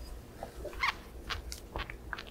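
Silicone spatula stirring thick melted dark chocolate in a glass bowl: a handful of short, sticky clicks as it scrapes and folds through the chocolate.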